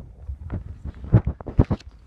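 A quick string of irregular knocks and thumps over a low rumble, the loudest about a second in and another just after, like handling and bumps on a wooden tabletop.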